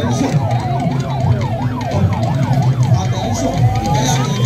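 Vehicle siren in a fast yelp, its pitch sweeping down and up about three times a second over a steady low hum. Near the end a single rising tone starts and keeps climbing.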